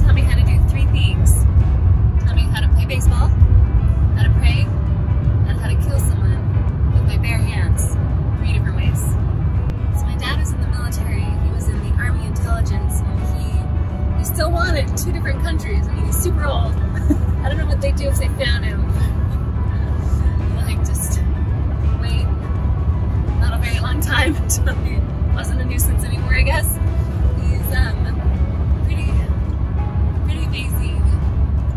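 Loud, steady wind and road rumble in the cabin of a Subaru Baja driving at highway speed with a window open, with music and voices over it.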